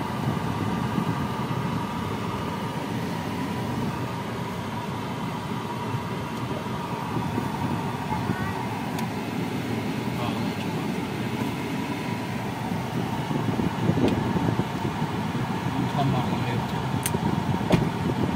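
Air-conditioning blower of a 2012 Toyota Prius C blowing air steadily out of the dashboard vents, heard inside the cabin, with a faint steady whine.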